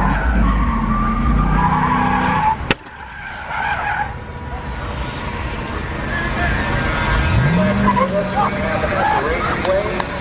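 Car engine running hard with tyres skidding, cut off by a sharp crack about three seconds in, after which the level drops suddenly. Later, voices are heard, and an engine note rises and holds near the end.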